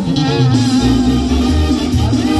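Live banda sinaloense music: brass and clarinets over a pulsing sousaphone bass line, with a long held note running above the bass.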